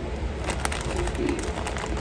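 Small pieces dropped by hand into a metal muffin tin, giving a quick, uneven run of light ticks and clicks starting about half a second in.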